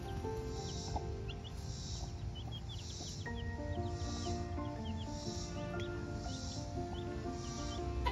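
Background music with held notes and a steady beat, with young chicks peeping repeatedly over it.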